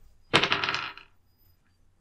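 A d20 die thrown onto a hard surface, clattering in a quick rattle that fades out within about two-thirds of a second, rolled for a perception check.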